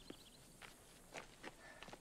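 Faint footsteps, a few soft steps about half a second apart, over near silence.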